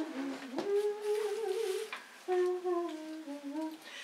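A person humming a slow, wordless tune in long held notes, with a few sliding steps between them.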